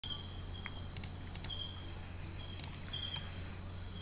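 Crickets trilling steadily, a high continuous pulsing tone with a second chirp coming and going, over a low electrical hum. A few short sharp clicks come about a second in and again near two and a half seconds.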